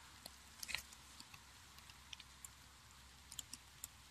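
Faint, sparse crackles and ticks of split firewood catching light in a smoker's firebox, with a small cluster about a second in and a few more snaps near the end.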